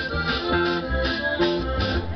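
A live band playing through a PA: a steady beat of bass and drums, about three pulses a second, under long held melody notes.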